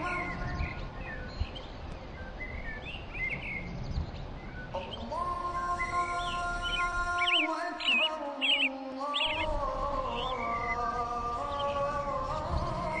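Birds chirping over an intro soundtrack of held tones, which come in about five seconds in.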